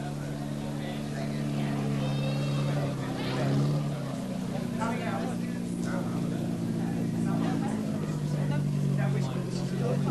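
A Mini's engine running steadily, its pitch shifting and settling a little lower about four seconds in, with voices over it.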